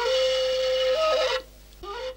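Flute in the title music holding one long steady note, which steps up in pitch about a second in and breaks off at about a second and a half, followed by a short pause.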